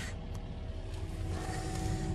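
Excavator's diesel engine running steadily at idle, a low rumble heard from the machine, with a faint steady hum of several tones joining in about halfway through.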